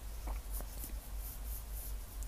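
Pencil scratching on drawing paper in a series of short, faint strokes as a wing outline is drawn.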